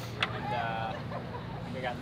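Faint background voices talking over a low steady hum, with one sharp click just after the start.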